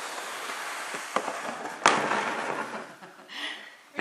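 Two sharp knocks, the first about a second in and the louder one just under two seconds in, over a faint steady hiss.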